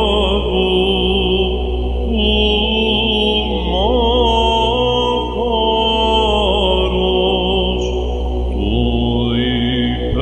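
A solo Byzantine cantor singing a slow, ornamented doxastikon melody over a steady electronic ison drone.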